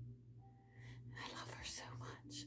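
Faint whispering voice, soft and breathy, starting about halfway through, over a low steady hum.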